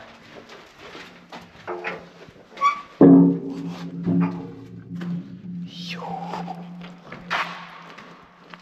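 A heavy steel bunker door clangs loudly about three seconds in, and a low metallic ringing hangs on for several seconds before fading, with a few lighter knocks of metal before it.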